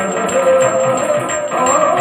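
Yakshagana stage music: a sustained drone with held organ-like tones, over drum strokes from the maddale and chende.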